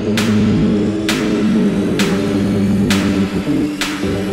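Techno track: a looping synthesizer riff with a bright, noisy percussion hit that repeats about once a second and rings off briefly.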